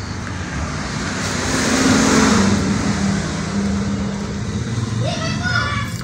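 A motor vehicle going by, its noise swelling to a peak about two seconds in and then fading, with a steady low engine hum underneath.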